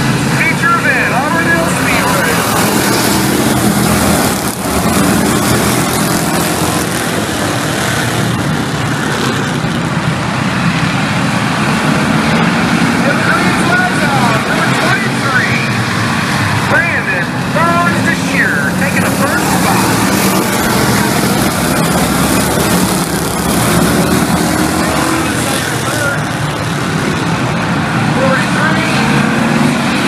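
A pack of Bomber-class stock cars racing on a short oval track, their engines running together loud and steady, with revs rising and falling as the cars go by. Spectators' voices are mixed in.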